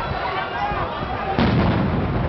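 A single loud bang about a second and a half in, trailing off in a short low rumble, with shouting voices around it.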